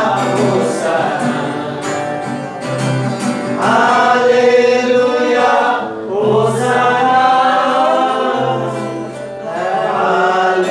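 Voices singing a slow worship song to an acoustic guitar, in long held phrases.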